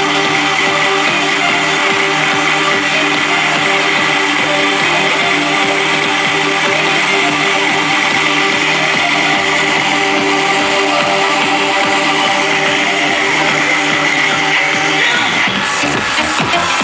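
Loud electronic dance music blasting from truck-mounted car-audio speaker walls, running steadily, with an abrupt change in the sound near the end.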